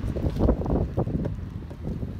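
Wind buffeting the microphone: a gusty low rumble, strongest about half a second in.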